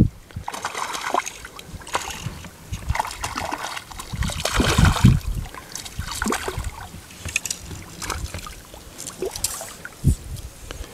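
Irregular splashing and sloshing in shallow flats water as a small hooked bonefish is brought to hand, loudest about five seconds in.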